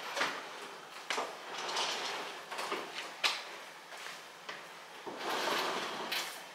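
Stainless steel refrigerator being pulled out from its alcove across the kitchen floor: several short sliding scrapes, with a couple of sharp knocks between them.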